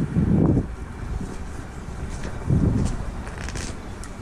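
Wind buffeting the microphone in two low rumbling gusts, one at the start and one a little over halfway through.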